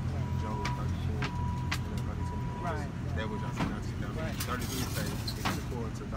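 Steady low rumble of road traffic, with indistinct voices of people talking and a few small clicks and knocks. A thin steady whine sounds on and off through the first half and stops about three and a half seconds in.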